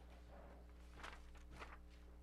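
Near silence with a steady electrical hum, broken by three soft, brief rustles of papers being handled.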